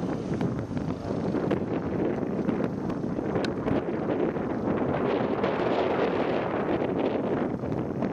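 Wind buffeting the camcorder microphone: a steady low rumbling noise that swells somewhat in the second half.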